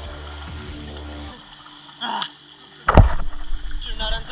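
A person jumping into a river pool: background music cuts off, then about three seconds in comes a loud splash of the body hitting the water, followed by churning water.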